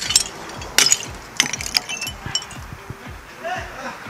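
A hammer knocking brick, with broken brick fragments clinking against each other and the concrete slab: sharp knocks, the loudest about a second in, then lighter clinks.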